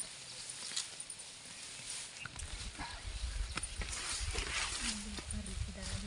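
Grass and weeds rustling and snapping as they are pulled up by hand, with a low rumble of wind on the microphone building after a couple of seconds. Near the end a low, wavering voice sounds in short broken stretches.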